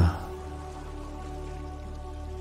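Soft ambient music with sustained, unchanging pad tones, over a steady even hiss of water or rain noise.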